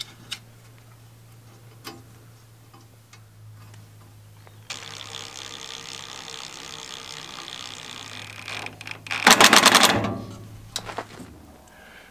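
A Ryobi ONE+ HP brushless cordless driver drives a bolt fitted with a rubber bumper into the ladder bracket. Its motor runs steadily for about four seconds, then gives a louder, rapid clatter for about a second near the end. Faint clicks of handling the parts come before it.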